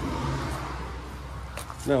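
Brief, hesitant speech, a drawn-out 'é...' and then 'não', over a steady low background rumble.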